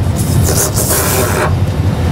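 Steady low rumble of flight-simulator engine noise, with a loud hiss that starts just after the beginning and cuts off after about a second and a half.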